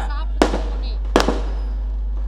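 Two sharp cracks, each with a short echo, about three-quarters of a second apart, over a steady low hum.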